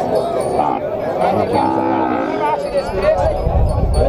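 A cow lowing: one drawn-out moo about a second and a half in, lasting about a second, over the steady chatter of a crowd.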